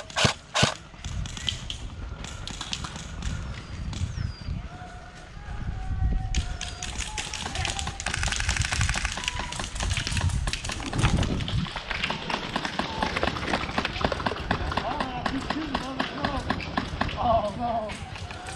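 Airsoft rifles firing in rapid bursts of sharp, evenly spaced clicks: a brief burst at the very start, then near-continuous rapid fire through the second half. Distant shouting can be heard under the fire in the first half.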